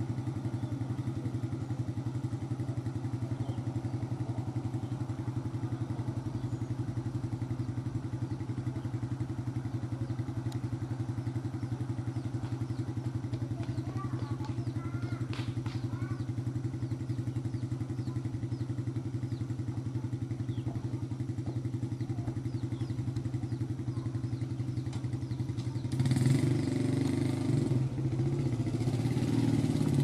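A small engine idling steadily nearby, growing louder near the end.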